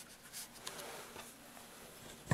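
A few faint, soft strokes of a watercolour brush dabbing on paper.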